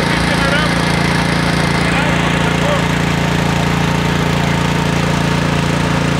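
An engine running steadily at a constant speed, a continuous low drone with no change in pitch.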